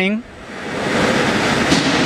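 KIMHOO TF8L CNC lathe rough-turning a steel workpiece: the tool cutting the spinning part makes a steady hiss that swells over about a second and a half.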